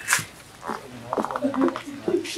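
Indistinct voices in the background, with a short pulsed, wavering vocal sound starting about a second in.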